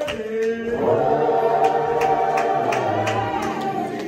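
Church congregation singing a slow gospel worship song together, voices holding long notes over sharp recurring beats.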